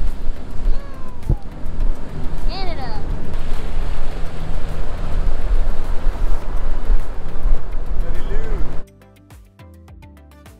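Wind buffeting the microphone over a boat's engine and water noise while underway, with a few brief voices. About nine seconds in this cuts off suddenly and soft background music takes over.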